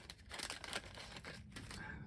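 Small clear plastic parts bag crinkling as it is handled, in several short rustles.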